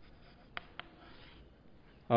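Chalk writing on a chalkboard: faint scratching strokes, with two short sharp taps of the chalk on the board about half a second in.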